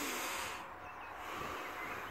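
A man drawing a slow, deep breath, heard as a soft, even hiss of air.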